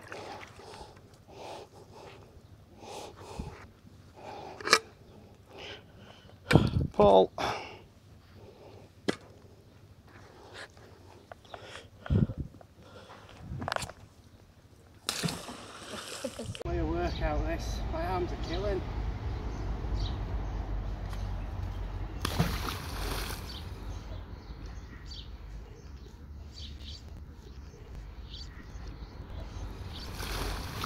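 Water sloshing and splashing with scattered knocks and clinks as a mud-caked magnet-fishing find is rinsed off in the canal. About halfway through, a steady low rumble sets in.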